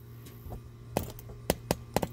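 A plastic gold pan holding wet concentrates being handled, giving three or four short sharp clicks and knocks in the second half over a low steady hum.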